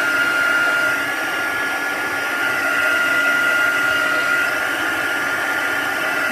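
Handheld craft heat tool running steadily, its fan blowing hot air with a constant high whine over the rushing air as it heats and melts a Tyvek flower.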